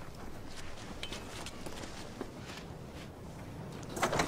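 Soft footsteps on dry grass: a few scattered steps over a low outdoor hiss.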